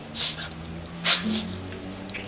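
A cocker spaniel and a dachshund puppy play-fighting: two short, sharp, noisy bursts of play sounds from the dogs, about a quarter second and a second in, over steady low background sound.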